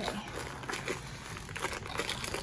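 Cardboard box and packaging rustling and crinkling as hands slide a rolled canvas out of one end, with small irregular clicks and scrapes.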